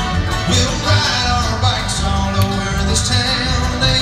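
Live bluegrass string band playing an instrumental passage between verses, with upright bass, banjo, acoustic guitar, mandolin and fiddle.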